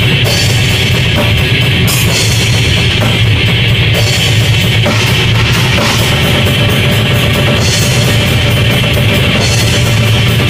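Death metal played live on a distorted electric guitar and a drum kit: loud, fast drumming under a steady wall of guitar, with cymbal crashes ringing over it several times.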